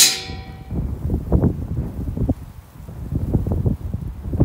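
A metal gate clangs shut with a ringing tone that fades within about a second. Then gusty wind buffets the microphone.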